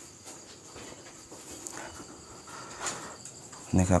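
Crickets and other night insects chirring steadily in high, continuous tones.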